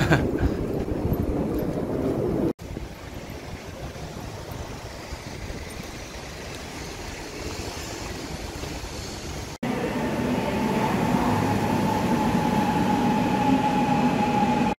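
A Gwangju Metro Line 1 subway train moving at the platform behind glass platform screen doors, heard as a low rumble with a steady high electric whine, in the last four seconds or so. Before that come a few seconds of street noise and then quieter station ambience.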